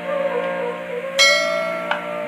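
Bengali kirtan music: a harmonium's held chords under a wavering melody, with a bright metallic strike ringing out about a second in and a sharp click near the end.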